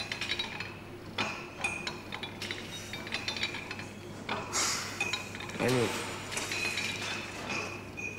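Gym ambience: repeated metallic clinks and clanks from weight-stack exercise machines in use, some ringing briefly, over a steady low hum.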